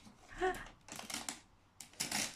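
Wrapping paper crinkling and tearing in short crackly bursts as a gift is unwrapped, with a brief small child's vocal sound about half a second in.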